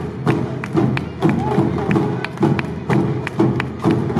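Live Awa odori festival music: drums and a small hand gong strike a quick, driving two-beat rhythm, about two strikes a second, over the band's melody.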